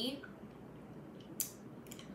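A pause in a woman's talking: quiet room tone, with one brief sharp click about one and a half seconds in.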